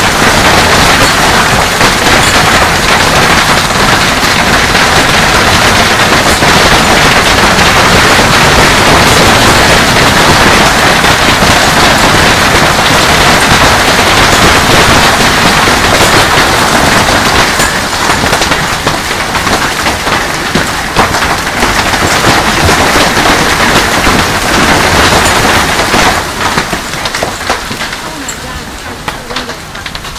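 Heavy hail pelting a swimming pool and concrete patio: a loud, dense roar of countless hailstone impacts with sharp cracks. It eases a little after about 17 seconds and dies down over the last few seconds as the hail lets up.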